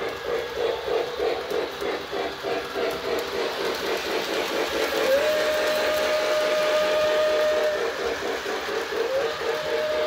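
Lionel LionChief John Deere 0-8-0 O gauge steam locomotive's onboard sound system chuffing rhythmically as the train runs along the track. About five seconds in a steam whistle slides up into a held tone lasting nearly three seconds, and a second whistle starts near the end.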